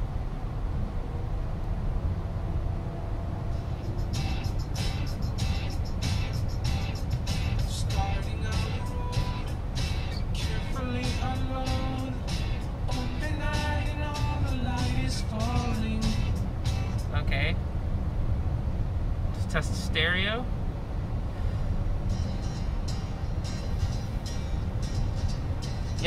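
A song playing through the car's cabin speakers during a stereo test, with a voice and a beat in the middle stretch, over steady road and tyre noise in the moving car.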